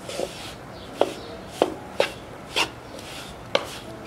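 A wooden spatula scrapes and knocks against a nonstick kadai while stirring a thick mix of besan roasting in ghee. There are five sharp knocks, about one every half second to second.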